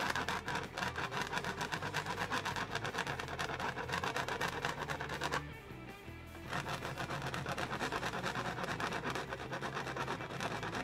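Background music playing under a paintbrush scratching and scrubbing on canvas in quick short strokes, which break off for about a second a little after five seconds in.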